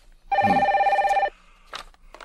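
Corded desk telephone ringing once: a single rapidly trilling ring lasting about a second.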